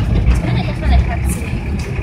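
Steady low engine and road rumble heard inside a moving minibus, with voices talking in the background.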